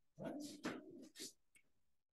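A man's voice saying a couple of short words, then quiet.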